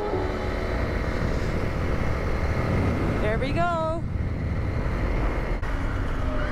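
Honda CRF250L single-cylinder engine running as the motorcycle rides along a road, mixed with steady wind noise on the handlebar camera's microphone. A brief voice is heard a little past halfway.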